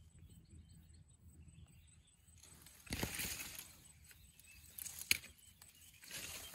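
Faint outdoor background with a brief rustle of brush and leaves about halfway through, and a single sharp click near the end.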